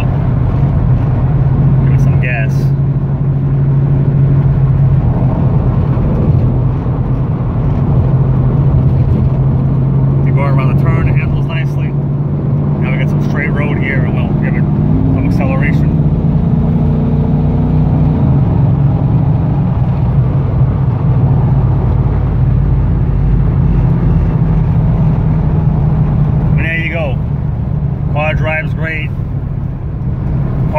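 Cabin sound of a 1997 Pontiac Trans Am WS6 on the road: its LT1 V8 gives a steady drone under road noise. About halfway through the engine pitch rises as the car accelerates, then settles back to cruise.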